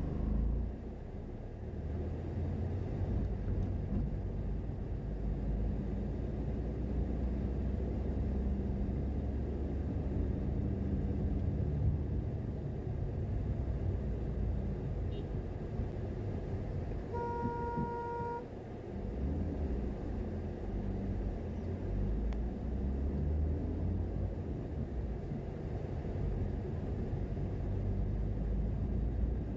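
Low, steady rumble of a car driving through city traffic, engine and road noise. About seventeen seconds in, a car horn sounds once, one steady note held for just over a second.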